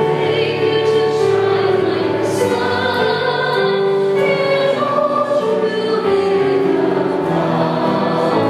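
Choir singing a slow hymn, with long held notes.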